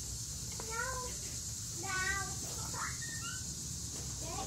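Several short animal calls, each about a quarter second long, that bend up and down in pitch, under a steady background hiss.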